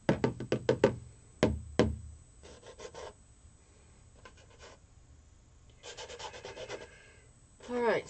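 Paintbrush dabbing and tapping on a stretched canvas: a quick run of about seven sharp knocks in the first second and two more a moment later. Fainter scratchy brush strokes rubbing across the canvas follow.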